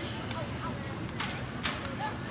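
Faint background voices with outdoor ambience, and two short clicks in the second half.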